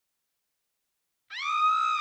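Silence, then about a second and a half in a single held electronic tone comes in, gliding up a little at its start and then holding steady.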